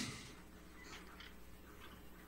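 Faint, scattered scratching of a pen writing on paper, over a quiet room hum.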